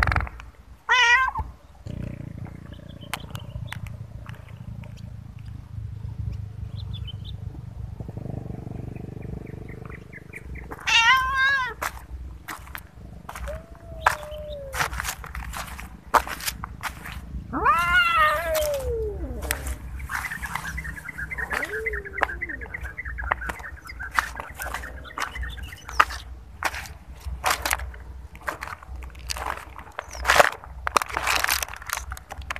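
Cats meowing: three loud, drawn-out meows about a second in, around 11 seconds and around 18 seconds, with a couple of softer, lower calls between them. Scattered crunches and clicks of rubbish and debris run throughout.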